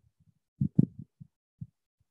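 A handful of soft, low thumps, about five in just over a second, from a person's body and feet moving through a squat with an arm swing; one thump is sharper than the rest.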